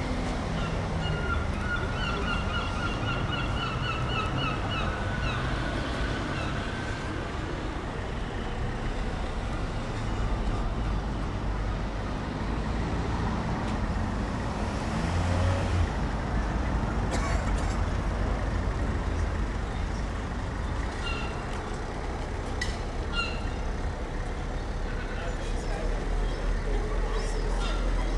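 City street ambience: car traffic running past with a steady low rumble, and passersby talking.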